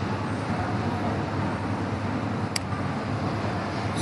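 Steady background noise, a low rumble with hiss, and a single sharp click about two and a half seconds in.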